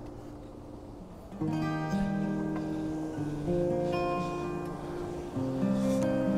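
Background music: a slow instrumental piece of held chords that change every second or so, softer for the first second and a half.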